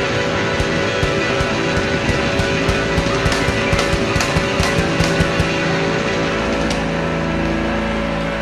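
Live blues band playing loud: electric guitar with drums and sustained chords. The drum hits stop about seven seconds in, leaving a held chord.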